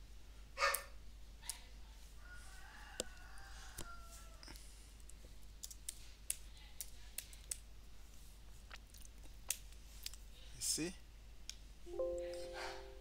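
Computer keyboard keys being typed in irregular, spaced-out clicks. A louder brief noise comes about a second in and another near the end.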